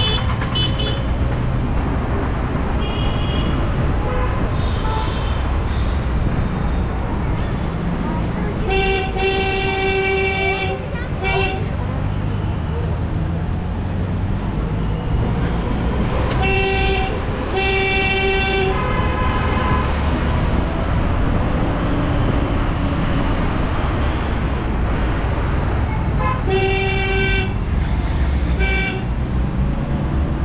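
Street traffic heard from a moving vehicle: a steady engine and road rumble, with vehicle horns honking three times, each a longer honk followed by a short one, about a third of the way in, around the middle and near the end.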